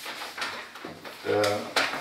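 Chalk tapping and scratching on a blackboard as it writes, in short sharp clicks, with a brief voice sound about a second and a half in.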